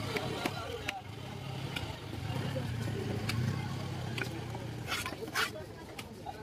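Scattered sharp knocks and taps of a large cutting knife against a wooden block as fish is cut up. Under them runs a low drone that swells in the middle and fades about five seconds in.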